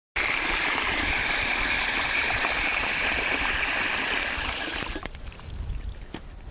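Water from a garden hose spray nozzle running into a rubber bowl, shut off abruptly about five seconds in.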